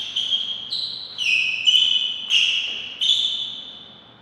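A short tune of about six high, pure electronic notes, each starting sharply and stepping to a new pitch, the last one fading away about a second before the end.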